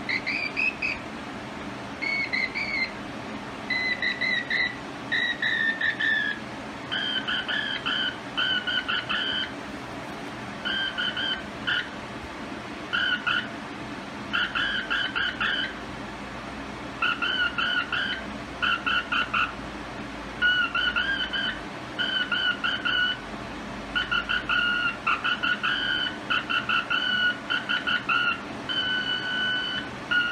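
Morse code beeps from a communications receiver's speaker, a hand-keyed CW signal, plausibly from the homebuilt 1930s TNT transmitter being put on the air. The tone comes in short and long groups over a steady background hiss, and its pitch drops from a higher note to a lower one after the first several seconds.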